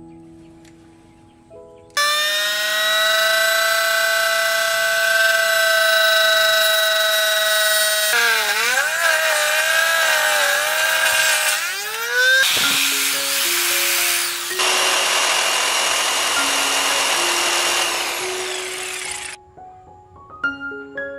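Table saw running with a steady high whine, its pitch dipping and wavering as a wooden plank is pushed into the blade, then a rough, noisy cutting sound; it cuts off suddenly near the end. Background music plays underneath.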